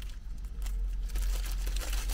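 Paper burger wrapper crinkling and rustling as it is unfolded and peeled back from a burger, a run of small irregular crackles.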